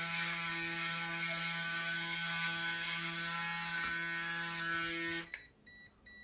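Electric shaver running against the chin with a steady buzz, which cuts off abruptly about five seconds in. Two short faint beeps follow near the end.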